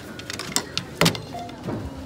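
Groceries set down on a supermarket checkout conveyor belt: a few knocks as a plastic gallon milk jug and a bagged loaf of bread go down, the loudest about a second in, then a short falling whine near the end.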